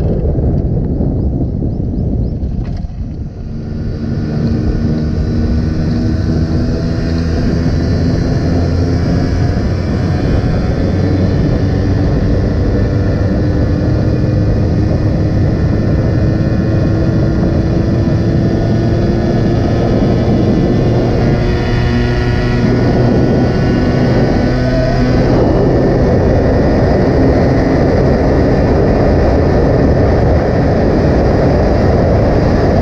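Yamaha RX two-stroke single-cylinder motorcycle engine running hard at speed on a top-speed run, its note climbing slowly as the bike gains speed, under heavy wind rush on the microphone. A brief dip in level about three seconds in.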